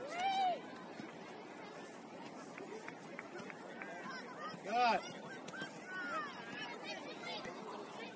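Shouted calls from players and onlookers across a soccer field over a steady outdoor background, with one loud drawn-out shout just after the start and another, the loudest, about five seconds in, and a few fainter calls after it.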